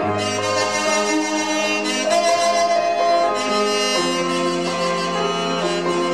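Saxophone playing a melody of held notes over a backing track with a bass line; the bass drops to a lower note about four seconds in.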